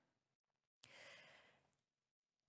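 One faint breath from the woman into her headset microphone, lasting just under a second and starting a little before the middle; otherwise near silence.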